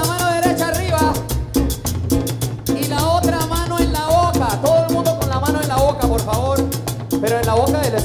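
Live Colombian tropical dance band playing: a fast, even percussion beat over a pulsing bass, with melody lines moving on top.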